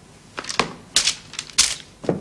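A quick series of sharp knocks and clacks on hard surfaces, four or five in under two seconds. The two near the middle and end are the loudest.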